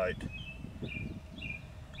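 A bird chirping in the background: about three short, high chirps roughly half a second apart, over a faint low outdoor hum.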